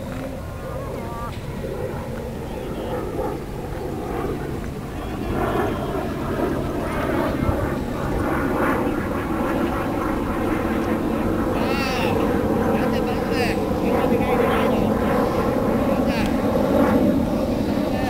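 Softball players calling out and chattering across the field during play, louder and busier from about five seconds in, over a steady low outdoor rumble.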